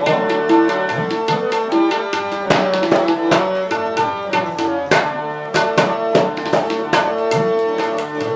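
Tabla and harmonium playing an instrumental passage: a quick, even run of tabla strokes, about five a second, over held harmonium notes.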